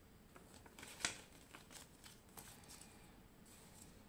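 Faint rustling and crackling of a folded paper instruction leaflet being handled and folded up, in short crisp bursts, the sharpest about a second in.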